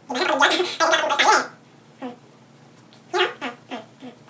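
A man's voice making a wordless vocal noise lasting about a second and a half, followed by a few short vocal sounds near the end.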